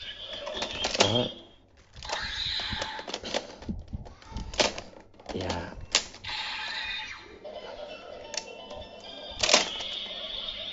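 DX Swordriver toy belt playing its electronic music and sound effects, with several sharp plastic clicks as the sword and the Wonder Ride Book are worked in the buckle.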